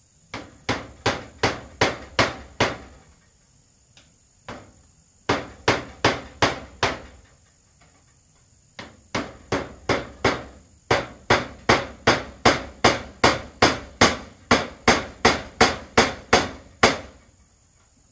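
Hammer nailing corrugated metal roofing sheet onto a wooden frame: sharp metallic strikes in runs, about two to three a second, with short pauses between runs and a long steady run in the second half.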